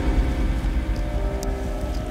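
Suzuki outboard motor on an inflatable boat running steadily, with a low rumble underneath a steady engine hum.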